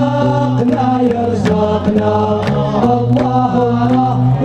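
A men's choir of a Moroccan Hamadsha Sufi brotherhood chanting a devotional hymn together in long held notes, over a steady percussive beat about twice a second.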